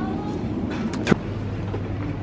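Glass beer bottles knocking together twice, sharply, about a second in, over a steady low hum.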